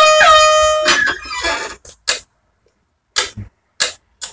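A handheld air horn blast, loud and steady in pitch, lasting about a second. A few short, scattered sounds follow, then brief silence.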